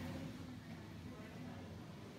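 Quiet, steady room hum with no distinct event.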